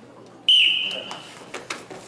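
Referee's whistle, one blast of about half a second starting half a second in, starting the wrestlers from the referee's position; a couple of faint knocks on the mat follow.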